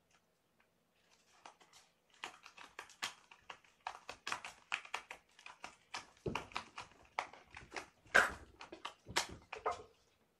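A cat clawing a cardboard scratcher: quick, irregular scratching strokes that start about a second in and keep going.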